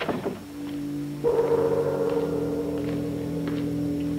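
Dramatic film-score organ music: a sudden descending swoop at the start, then a held chord that swells louder about a second in and sustains. Faint footsteps tap in under it from about two seconds in.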